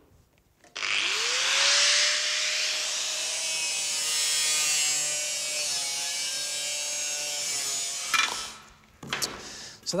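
Angle grinder spinning up about a second in and cutting through a sheet-metal car body panel: a steady whine over a loud, hissing cut. It stops about eight seconds in.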